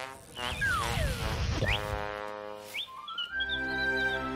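Cartoon soundtrack: a long falling slide-whistle glide over music, two quick rising whistle swoops, then light music with a held note and small bird-like chirps near the end.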